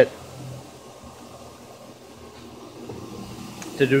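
1925 Spencer Turbine Cleaner, an electric-motor-driven turbine vacuum blower, running steadily at about 40 hertz on a variable frequency drive, a quiet, low purr.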